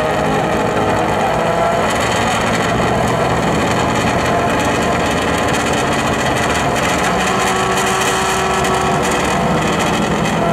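A drag-racing car's engine idling loudly and steadily at the start line.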